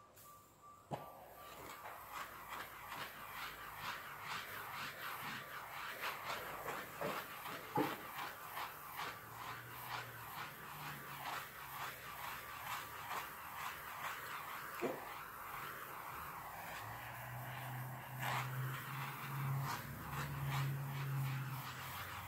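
Handheld gas torch burning with a steady hiss and faint crackling, starting about a second in. It is being passed over wet acrylic paint treated with silicone spray, to pop surface bubbles and bring up cells in the pour.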